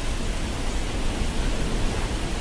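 Steady, even hiss of background noise with no other distinct sound, between two stretches of talk.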